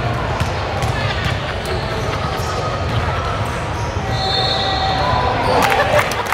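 A basketball bouncing on a hardwood gym floor, with voices talking in the large, echoing hall.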